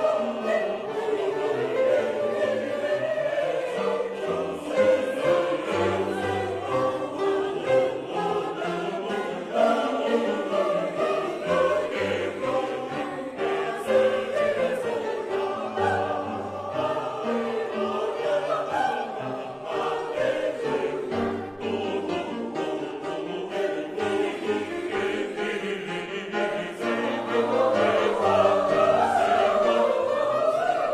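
Large mixed church choir singing, growing louder near the end.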